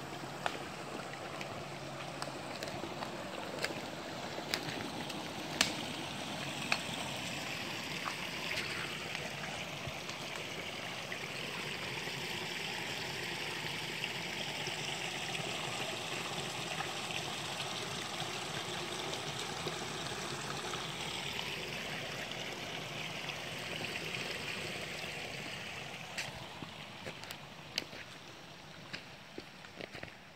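Small woodland creek running and trickling through a beaver dam of sticks and logs, a steady water sound that swells through the middle and eases off near the end. A few sharp clicks or snaps stand out over it.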